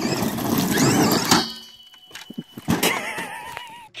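Radio-controlled monster truck's motor whining up and down in pitch over a rough hiss as it drives on gravel, then a sharp knock about a second and a half in, followed by a few lighter knocks and clanks.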